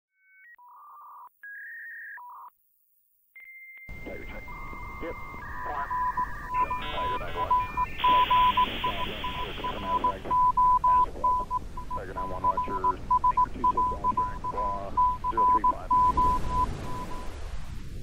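Electronic intro sound effects: short beeps stepping in pitch like telephone dialing tones, then a steady tone keyed on and off in a dot-and-dash pattern like Morse code. It is joined briefly by a burst of modem-like chirps and a hiss, and ends with a rising sweep.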